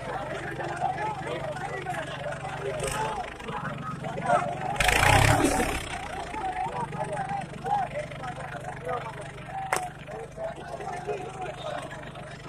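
John Deere 5310 three-cylinder turbo diesel tractor engine running steadily while a turbo fault sends up white smoke, under constant crowd chatter. A loud rush of noise about five seconds in.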